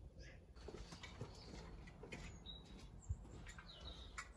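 Near silence: faint background with a few brief high chirps, like distant birds, and a small knock about three seconds in.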